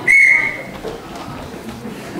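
A referee's whistle blown once: a single short, shrill blast of about half a second.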